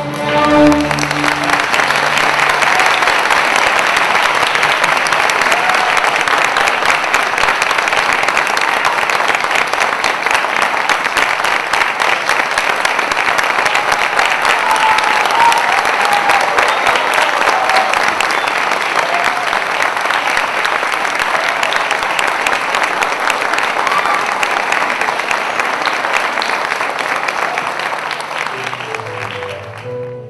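A string orchestra's closing chord ends about a second in, and an audience breaks into steady applause that thins out near the end.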